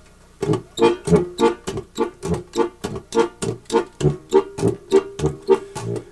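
Diatonic button accordion's left-hand bass and chord buttons played alone in short, detached notes, about three a second, a bass note alternating with a chord. This is the European Slovenian-style accompaniment, less pulsating than the Cleveland style.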